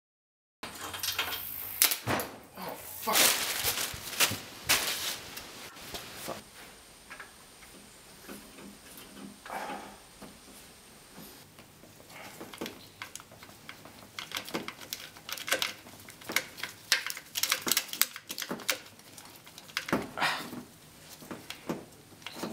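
Hand tools clinking, clicking and scraping on metal while a wrench works around the carburetor of a Saab V4 engine, in irregular bursts of sharp clicks with quieter gaps.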